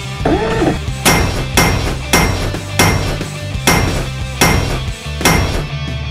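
A run of about seven sharp hit sound effects, roughly one every two-thirds of a second, each with a short ringing tail, standing out over background music as staged fight blows between toy figures.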